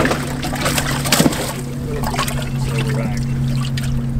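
Water splashing and sloshing in a bass boat's livewell as a hand reaches in after a fish, loudest in the first second or so, over a steady low hum.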